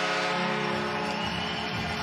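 Arena goal horn sounding one steady, many-toned blast, the signal of a goal just scored. It stops under a second in, and arena music comes up in its place.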